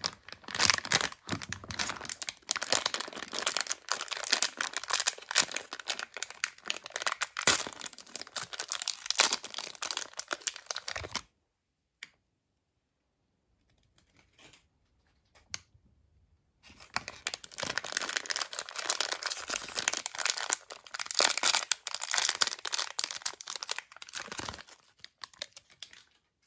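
Plastic mystery-pouch wrapper crinkling and tearing as it is handled, for about eleven seconds; then a pause of about five seconds with one small click, and the crinkling starts again.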